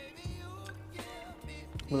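Quiet background music with a soft melody line playing between stretches of talk.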